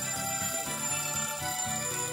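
Kitchen timer ringing steadily: the set cooking time has run out.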